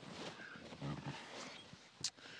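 Faint shuffling of a man climbing out of a vehicle's back seat, with a brief low sound about a second in.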